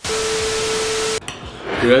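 TV static sound effect: a loud burst of hiss with a single steady tone running through it, lasting about a second and cutting off suddenly. A laugh and a man's voice follow near the end.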